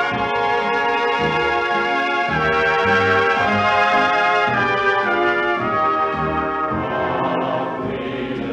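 Instrumental music played on brass: slow, held chords over a moving bass line. A noisy wash comes in near the end.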